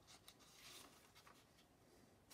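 Near silence with a few faint rustles in the first second, like light handling of paper or packaging.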